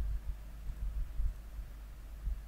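Low, uneven rumbling hum of background noise, with no distinct events.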